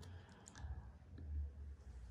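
Faint clicks from a 2018 MacBook Air's trackpad, a few light clicks in the first second or so as the FaceTime window is closed.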